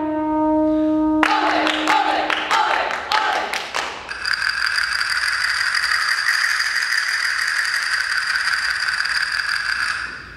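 A brass chord held briefly, then castanets clacking in short irregular strokes for about three seconds, followed by a steady castanet roll held for about six seconds.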